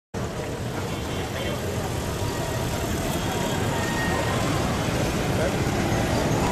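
Busy street ambience: steady traffic noise mixed with the murmur of a crowd talking.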